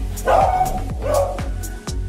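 A beagle barking twice, two short loud calls, over background music with a steady beat.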